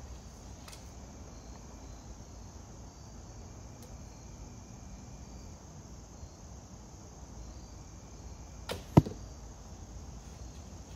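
A shot from an AF Ming asiatic horsebow with a feather-fletched carbon arrow: two sharp cracks close together about nine seconds in, the bowstring's release and the arrow's flight or strike. Crickets chirp faintly throughout.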